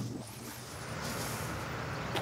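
Faint, steady outdoor background noise with a low hum.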